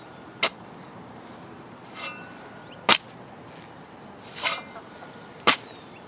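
Three short, sharp knocks, about two and a half seconds apart, over a quiet outdoor background.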